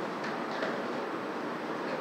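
Steady, even hiss of room background noise picked up by the open microphone, with a couple of faint ticks about half a second in.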